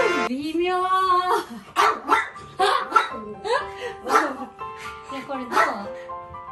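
A small dog barking in a string of about eight short barks, roughly two a second, over background music.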